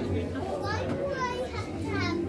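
Children's voices chattering in the background, high-pitched and rising and falling, over a steady low hum.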